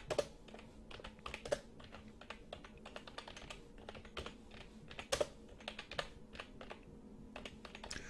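Computer keyboard being typed on: a faint, irregular run of key clicks, a few strokes louder than the rest.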